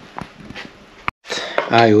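A few light clicks and taps from parts on a small outboard engine being handled. About a second in the sound cuts out briefly, and a man's voice follows.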